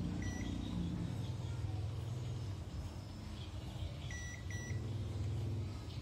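A digital multimeter in continuity-buzzer mode gives short beeps as the probes touch the TV power supply's secondary diodes and filter capacitor: one beep near the start, then two quick ones about four seconds in. Each beep cuts off at once because the reading fades away instead of holding, showing no short in the secondary. A steady low hum runs underneath.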